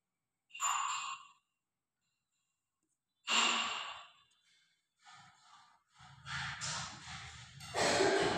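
Two breathy exhalations close to the microphone, about half a second in and about three seconds in. From about six seconds there is a rougher continuous noise with a low rumble under it.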